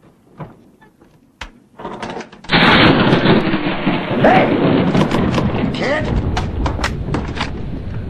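A closet door clicks shut. About two and a half seconds in, a loud, sustained noise begins, with sharp knocks and a man yelling over it.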